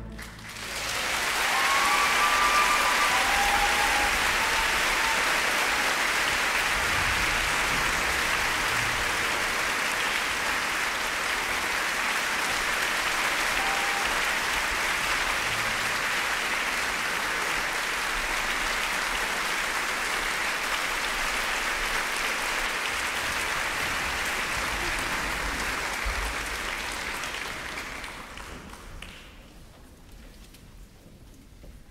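Audience applause in a concert hall, swelling up about a second in, holding steady, and fading away over the last few seconds.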